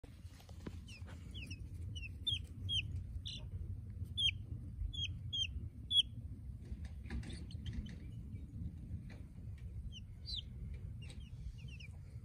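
Easter egger chicks peeping: short, high, falling chirps, many in quick succession over the first six seconds and scattered after that, over a steady low rumble.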